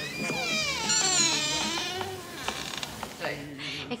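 A high-pitched, drawn-out vocal cry from a film clip's soundtrack, wavering and sliding down in pitch for about two and a half seconds, then a shorter vocal sound near the end.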